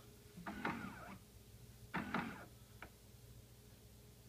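Keurig Vue 700 single-serve coffee brewer making two short mechanical sounds, each under a second, and a faint click near three seconds in, just after Brew is pressed. It is a failed brew attempt: the machine does not go on to brew.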